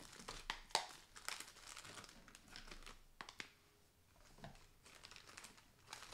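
Cellophane wrapping on new ink pads crinkling faintly in irregular crackles as it is handled and unwrapped, thinning out for a moment a little past halfway.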